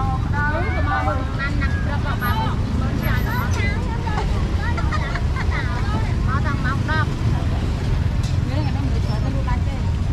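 Busy street ambience: voices of people chatting close by over a steady low rumble of road traffic.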